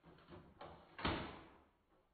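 A few soft knocks, then a sharper bang about a second in that dies away over about half a second.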